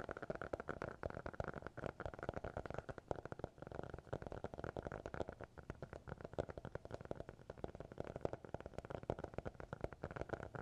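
Fingertips tapping rapidly and unevenly on the hard cover of a notebook held close to the microphones, many taps a second with no pauses.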